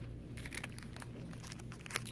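Plastic packaging crinkling as packaged store items are handled, a run of small irregular crackles over a low steady hum.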